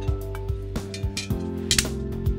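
Background instrumental music with sustained notes, over light clicks and clinks of brass plates being handled and fitted together by hand onto their registration pins, with a brief scrape near the end.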